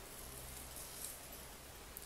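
Faint room tone: a steady low hiss with a light hum, and one small soft sound about a second in.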